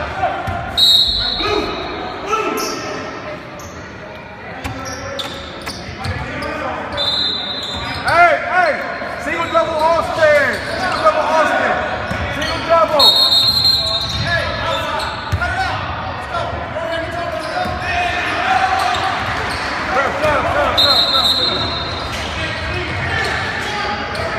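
Basketball game sounds in an echoing gym: a ball bouncing on the hardwood floor, sneakers squeaking, and indistinct shouts and chatter from players and spectators.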